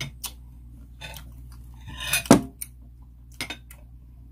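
Cutlery and dishes clinking at a dinner plate: a few short, sharp taps spread out, with one louder, longer clatter about two seconds in.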